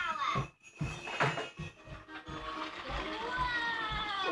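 A television playing a children's cartoon: character voices talking over music, then a long note that falls slowly over the last second and a half.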